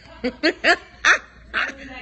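A woman laughing in about five short, pitched laughs.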